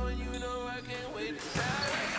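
A hip hop backing track whose bass drops out under a second in, giving way to the live sound of a basketball game in a gym, with a single ball bounce about a second and a half in.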